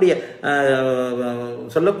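A man's voice holding one long, chant-like note for just over a second, starting about half a second in, its pitch sinking slightly, with brief speech around it.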